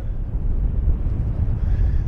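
Wind buffeting the microphone aboard a moving boat: a steady, low rumble with no clear tone.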